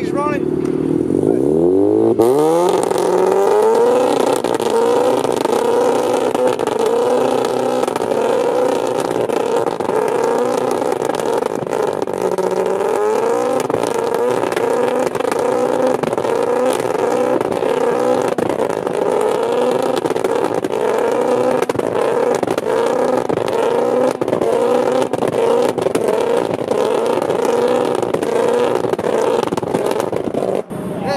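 Mazda RX-8's rotary engine is revved up hard in the first few seconds and then held at high revs, its pitch wavering up and down about once a second. It is being revved to shoot flames from the exhaust on a standalone ECU tune.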